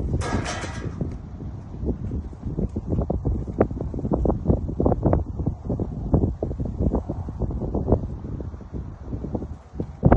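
Wind buffeting the microphone: a steady low rumble broken by many short, uneven gusty bumps, with a brief rushing burst about a second long right at the start.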